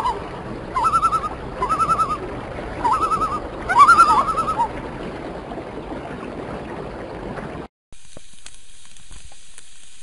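Common loon giving its quavering tremolo call: about four short wavering phrases, one a second, over a steady rushing background, ending about halfway through. Near the end the sound cuts off abruptly and is replaced by food sizzling on a grate over a campfire, with sharp crackles.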